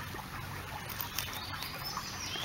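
Faint outdoor background with a few high bird chirps, and a couple of faint clicks as a flint point is lifted off the pebbles.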